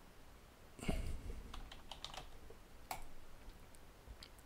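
Computer keyboard typing: a few scattered, quiet keystrokes, the heaviest about a second in and another sharp one near the end.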